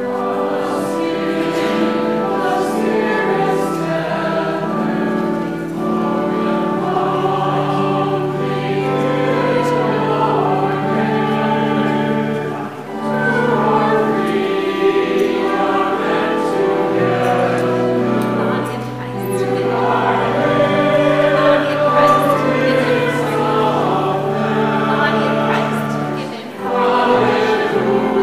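A group of voices singing a slow hymn with instrumental accompaniment, in long held phrases with short breaths between them.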